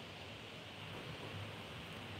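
Quiet room tone: a faint steady hiss with a low hum, no distinct strokes or knocks.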